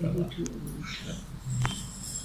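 Quiet talk trailing off, then a brief low murmur and a single sharp click about one and a half seconds in.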